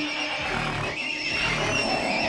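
Recorded horse neigh and whinny samples playing back, a long, high, wavering whinny, with their gain just turned down.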